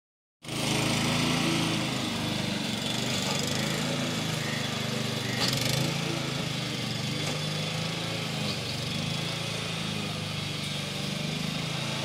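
Walk-behind petrol lawn mower running steadily while cutting dry grass, its engine note even throughout.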